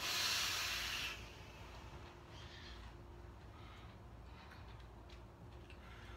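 A forceful exhale of a large vape cloud: a loud breathy hiss lasting about a second, then a few faint short breaths.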